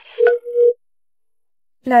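Phone call sound effect: a brief keypad beep, then a single steady call tone lasting about half a second, after which a voice starts near the end.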